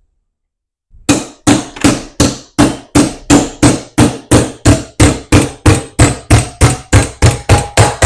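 Small hammer striking a copper strip clamped in a steel hobby vise, folding it over: steady blows about three a second, starting about a second in and quickening slightly near the end, the later ones with a faint ring.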